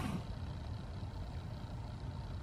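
Faint steady hum of a car's cabin blower fan running with the ignition on and the engine off.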